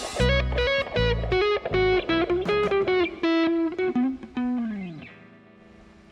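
Electric Stratocaster guitar playing a lead line of single sustained notes over a bass line that drops out about a second and a half in. The last note slides down in pitch about four and a half seconds in and fades away.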